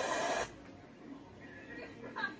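Surf from ocean waves breaking over a log, a steady rush that cuts off suddenly about half a second in, followed by a low background with faint voices near the end.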